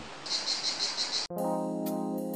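Insects chirring in a rapid, even pulse, about seven pulses a second, which cuts off abruptly after about a second and a quarter. Background music with sustained chords begins at the cut.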